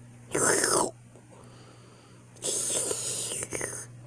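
A person making two breathy, whispered hissing sounds: a short one about half a second in, and a longer one in the second half. A faint steady low hum runs beneath.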